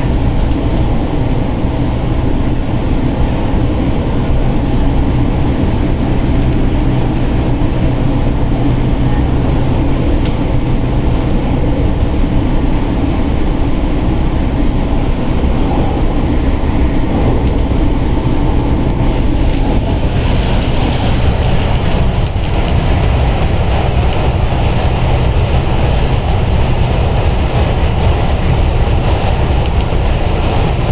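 Steady running noise inside an MTR Tung Chung Line train carriage travelling at speed. About twenty seconds in, the noise turns to a higher, hissier rushing.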